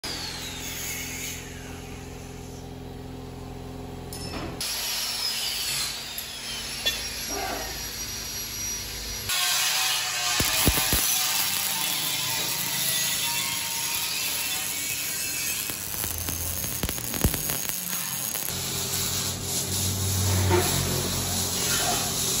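Workshop power tools running, heard in several short segments that change abruptly about four and a half, nine and eighteen seconds in, with music.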